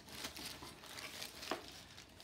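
Plastic bubble wrap crinkling and rustling as it is lifted out of a cardboard box, with a few sharp crackles, the clearest about one and a half seconds in.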